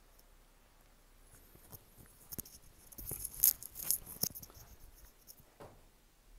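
Rustling and soft clicks of handling noise as a handheld phone camera is moved, loudest about three and a half to four seconds in.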